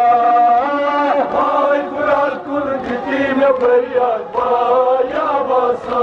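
Men chanting a Kashmiri noha, a Shia mourning lament, in long held, melodic phrases that rise and fall.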